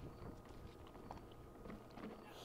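Near silence: faint room tone with a few soft clicks.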